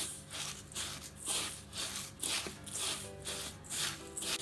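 Dry vermicelli rustling and crackling in a stainless steel bowl as a hand squeezes and rubs butter into it, in repeated strokes about three a second.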